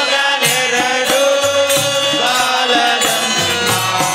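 Men's voices singing a Hindu devotional bhajan together in long held notes, over a steady beat from a hand-struck frame drum.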